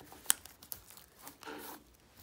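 Thin plastic shrink-wrap film crinkling and crackling as it is picked at and peeled off a hard plastic toy capsule, with scattered sharp crackles, the loudest about a third of a second in.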